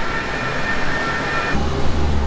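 City vehicle noise: a steady high two-tone whine for about the first second and a half, then a low vehicle rumble.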